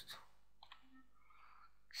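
Near silence with a couple of faint computer keyboard key taps about two-thirds of a second in.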